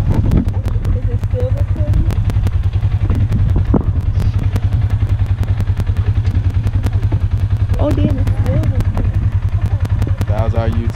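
Several Polaris RZR 570 UTVs, single-cylinder engines, idling together: a steady low drone with fast, even pulsing.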